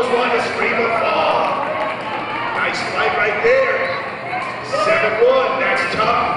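Voices calling out during a wrestling bout, with a few dull thuds from the wrestlers on the mat.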